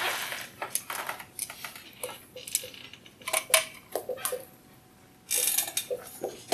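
Scattered sharp clicks and knocks of handling, then near the end a dry-erase marker stroking across a whiteboard.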